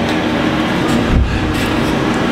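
Steady rumbling noise with a low hum.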